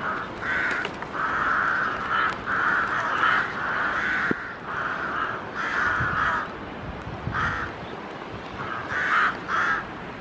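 A colony of rooks cawing at their rookery: many harsh caws from several birds, overlapping almost without a break. The calls thin out briefly past the middle, then bunch up again near the end.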